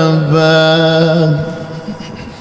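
A man's voice reciting the Quran in melodic tajweed style, holding one long steady note that ends about one and a half seconds in and fades away.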